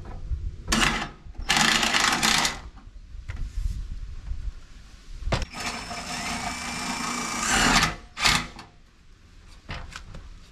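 Cordless drill running in four short bursts, the longest about two seconds with a steady motor whine, as it works against a metal gutter downspout.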